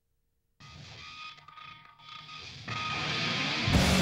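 Rock music starting after a brief silence: a guitar-led intro that grows louder, with the full band coming in loud near the end.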